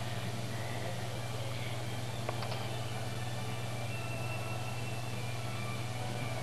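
A steady low hum under faint even hiss, with a faint click a little past two seconds in.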